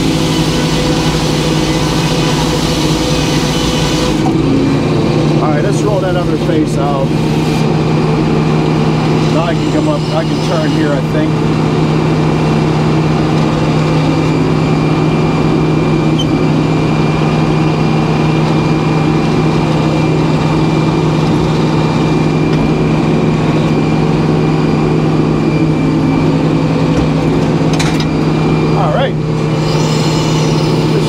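Edmiston hydraulic sawmill running steadily, its power unit holding an even hum under the spinning circular head saw. A harsher cutting noise from the blade through white pine fills the first four seconds, then drops away.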